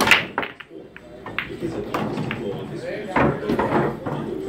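Pool break shot: a sharp crack as the cue ball smashes into the racked balls, followed by a few scattered clicks as the balls collide and rebound off the cushions.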